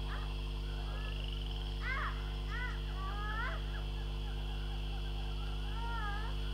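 A steady low electrical hum from the stage sound system, with a few faint, short, high-pitched calls that bend up and down, around two seconds in, again a second later and near the end.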